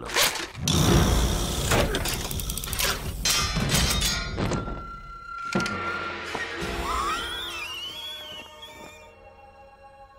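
Cartoon sound effects of a spiked suit of armour being triggered: a quick run of metallic clanks and thuds as its blades spring out into a fan, over film music, dying down in the last few seconds.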